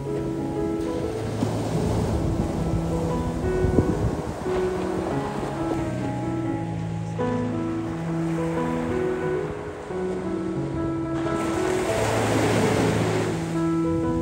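Background music of long held keyboard notes laid over the rush of surf washing onto a sandy beach. A wave's wash swells louder near the end.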